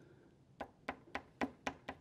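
Soft pastel stick striking and stroking paper on a drawing board: a quick run of light taps, about five a second, starting about half a second in.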